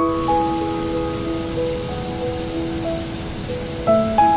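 Slow piano music, a few held notes with only occasional new ones, over a steady rush of falling water that comes in right at the start.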